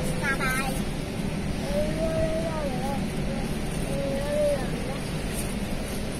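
Steady low rumble of a shopping trolley rolling over a tiled supermarket floor. A child's voice is heard briefly at the start, and a thin wavering tone comes about two seconds in and again near four seconds.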